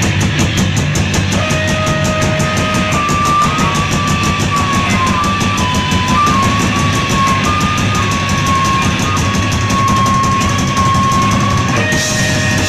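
Noise rock band playing live and loud: fast, even drumming under a dense wall of guitar noise, with a high held tone that wavers slightly in pitch from about a second and a half in.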